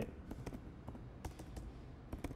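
Computer keyboard being typed on slowly: several separate keystrokes at uneven intervals.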